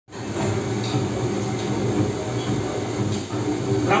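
Heavy military trucks carrying Pinaka rocket launchers, their engines rumbling steadily as they drive past. Heard through a TV speaker.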